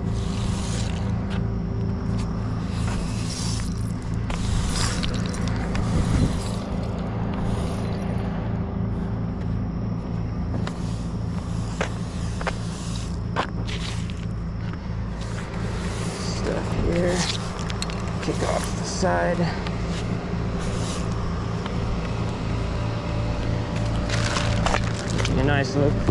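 Broom scraping and sweeping crash debris across a concrete road surface in repeated strokes, over a truck's diesel engine idling steadily.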